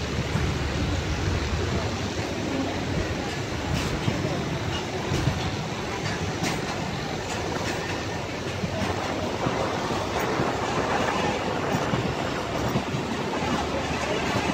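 Pakistan Railways passenger coaches of a departing train rolling past, steel wheels running on the rails with a steady rumble and occasional sharp clacks.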